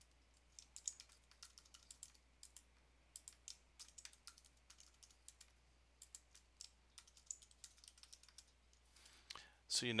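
Computer keyboard being typed on: an irregular run of quick, faint keystrokes as text is entered into form fields.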